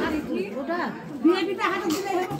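Overlapping chatter: several people, mostly women, talking at once in a crowded room.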